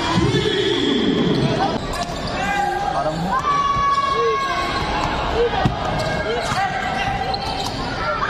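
Basketball game noise in an indoor arena: the ball bouncing on the hardwood court and sneakers squeaking in short chirps as players cut, over steady voices and shouts from the crowd. A long falling shout comes in the first second.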